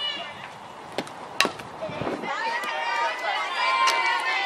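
A sharp knock from the softball pitch at home plate about a second and a half in, just after a fainter click. It is followed by several high voices shouting and cheering together.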